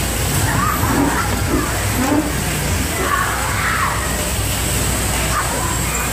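Bumper-car ride din heard from inside a moving car: a steady low rumble and noise, with people's voices calling out over it.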